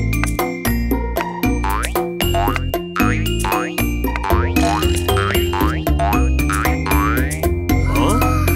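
Cartoon background music with a string of springy 'boing' sound effects, short swooping pitch glides repeating about once or twice a second, timed to a bouncing ball.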